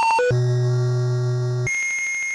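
Synthesized electronic jingle made of pure beep tones. A quick run of beeps ends, then a long low buzzing tone holds. Near the end it switches to a long high-pitched tone.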